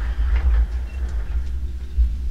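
A steady low rumble, with a few light rustles and knocks in the first half second.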